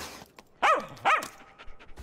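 A small dog barking twice, two short calls about half a second apart, each rising and falling in pitch.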